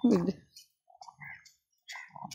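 A voice trailing off just after the start, then quiet with a few faint scattered clicks and soft sounds.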